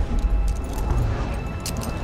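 Rushing wind of a skydiving freefall in a film sound mix: a steady low roar, with a few sharp clicks of falling debris.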